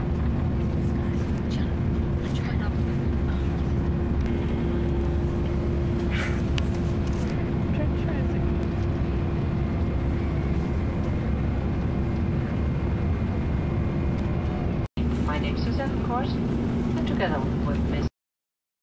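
Airliner cabin noise: a steady drone of engine and air-system rumble with a low hum running through it. It cuts out for an instant about fifteen seconds in and resumes with a slightly lower hum.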